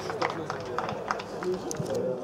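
Footballers' voices calling out on the pitch, with scattered short knocks of footsteps and studs on the turf.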